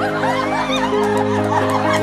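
Several women laughing excitedly together, over background music of slow, held notes.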